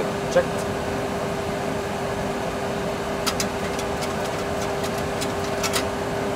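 Steady cockpit background noise in a Boeing 737 Classic flight simulator during the climb: an even rushing hum with one constant tone through it. Two faint clicks come about three seconds in and near the end.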